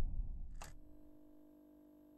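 Low whoosh of a TV channel logo sting fading away within the first second, with one short sharp click just past half a second, then near silence.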